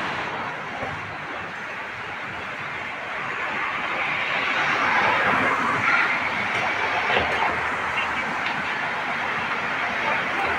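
Busy city street ambience: a steady wash of traffic noise that grows a little louder a few seconds in.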